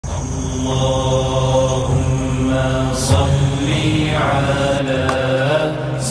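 A low male voice chanting a slow, melodic religious chant of the kind sung at a Mawlid, in long held notes.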